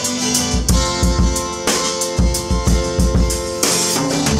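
Acoustic guitar strumming chords over a drum kit keeping a steady beat with kick, snare and cymbals, in an instrumental passage without singing. A cymbal crash comes near the end.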